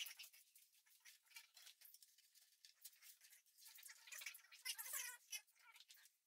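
Faint rustling and crackling of artificial plastic plant leaves being handled and arranged, with a louder patch of rustling about four to five seconds in.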